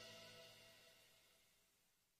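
Near silence: the gap between two songs, with only the last faint tail of a fade-out dying away.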